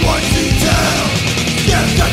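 Hardcore punk band playing at full tilt: distorted electric guitars, bass and drums, loud and unbroken.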